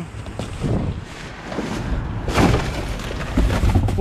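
Cardboard boxes and plastic trash bags being shifted and rummaged inside a metal dumpster, with rustling and low thuds; the loudest rustle comes about halfway through.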